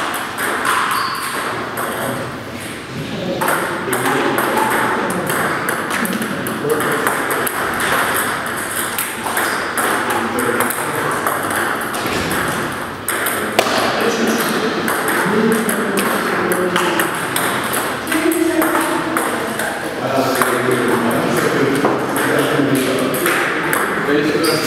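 Table tennis balls clicking off paddles and the table in quick rallies, many sharp clicks, over the continuous talk of voices in the hall.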